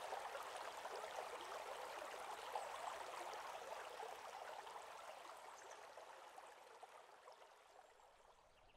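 Faint ambience of running water, like a stream: a steady, even rush that fades out to silence near the end.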